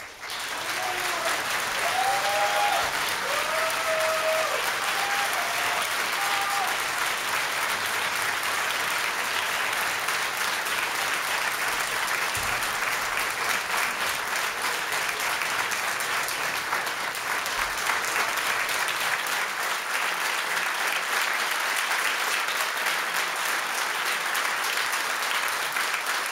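Studio audience applauding, starting suddenly and going on steadily.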